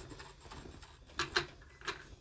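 A dress form with a dressed mannequin being lifted and carried off, giving light handling noise and three quick clicks or knocks in the second half.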